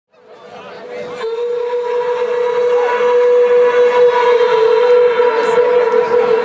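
A club sound system playing electronic dance music: a single sustained synthesizer note held steady, fading in from silence over the first second or two, with crowd chatter underneath.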